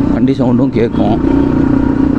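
Yamaha R15 V4 motorcycle's single-cylinder engine running at steady revs while riding, its exhaust note a steady drone.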